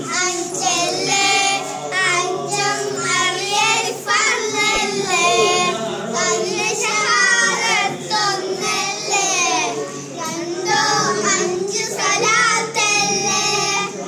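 Young boys singing a Meelad song together, phrase after phrase with short breaths between.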